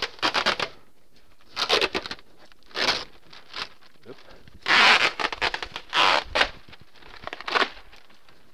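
Red cloth masking tape being peeled off a stucco wall and window frame in a series of short ripping pulls, about six in all, with the plastic sheeting it holds crinkling.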